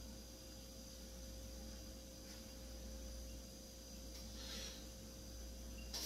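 Quiet room tone: a steady low hum with a faint constant tone above it, and one brief soft hiss about four and a half seconds in.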